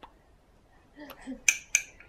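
A spoon clicking and scraping against a small plastic bowl as baby food is scooped up, with two sharp clicks in the second half.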